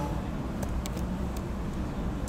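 A few light computer-keyboard keystroke clicks over a steady low background rumble.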